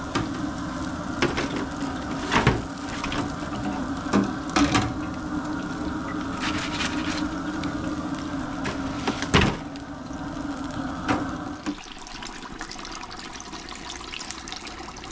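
Hot oil in a deep fryer sizzling steadily as cornmeal-battered whole catfish drain in a wire basket over it, with a few sharp metal clanks from the basket. The sizzle drops away about twelve seconds in.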